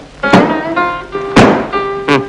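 Two heavy thuds about a second apart as a suitcase is flung about, over film background music with held notes.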